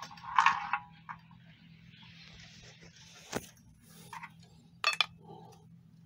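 Tippe top spinning on a non-stick frying pan: a faint scraping whir from its tip on the pan. A loud short rattle comes about half a second in, and sharp clicks come about three and a half and five seconds in. A faint steady hum runs underneath.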